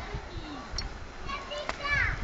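Children's voices calling and shouting at a distance, rising and falling in pitch, loudest near the end, over a low wind rumble on the microphone.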